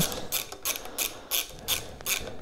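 Hand socket ratchet clicking steadily, about three clicks a second, as it snugs up a bolt.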